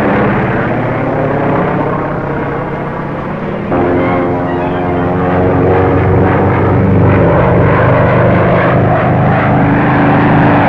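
Biplane's propeller engine droning steadily in flight. About four seconds in, the sound jumps suddenly louder and the engine note changes pitch.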